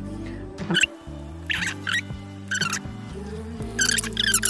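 Background music with steady held chords, over which a gel pen scratches out several short strokes on cardstock as lines are written.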